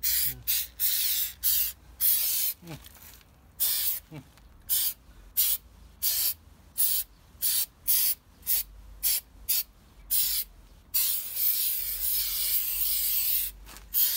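Aerosol spray can hissing as it sprays black protective coating onto a tree trunk's bark. It goes in quick short squirts, about two a second, then one longer spray of two to three seconds near the end.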